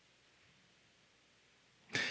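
Near silence: faint room tone through a pause in a man's spoken prayer, with his voice starting again right at the end.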